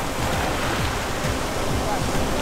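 Ocean surf breaking and washing through shallow water at the shoreline: a steady rush of waves.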